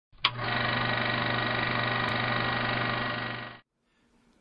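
A steady buzzing drone with many overtones starts with a click and holds at one pitch for about three and a half seconds, then cuts off shortly before the end.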